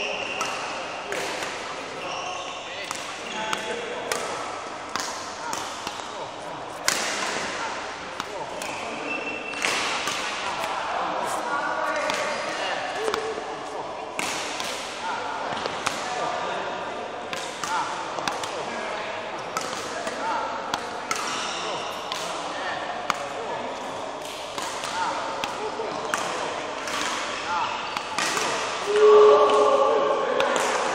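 Badminton rackets hitting a shuttlecock back and forth in a rally, a sharp hit every second or so, irregularly spaced. Voices carry in the background.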